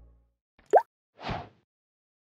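Background music fading out, then a short, loud, upward-gliding electronic 'plop' sound effect, followed about half a second later by a softer brief whoosh: the sound design of a brand-logo sting.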